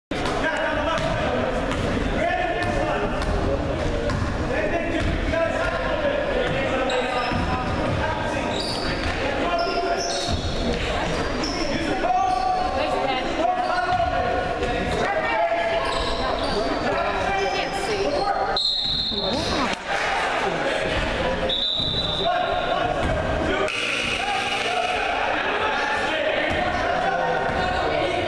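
A basketball being dribbled on a hardwood gym floor, with the thuds echoing in the hall under a steady hubbub of players' and spectators' voices. Two short, high-pitched tones come a few seconds apart, past the middle.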